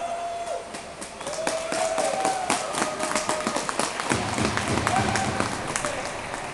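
Spectators clapping, with a few voices calling out over the claps.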